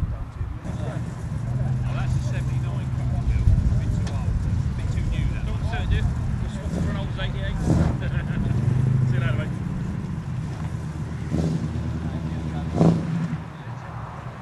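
Car engine idling with a low, steady note, with voices over it.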